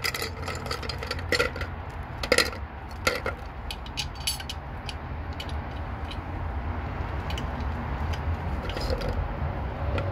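Hard plastic funnel-kit adapters clattering in a plastic bucket and against the radiator neck as they are picked through and tried on, a handful of sharp clicks and knocks in the first five seconds, over a steady low rumble.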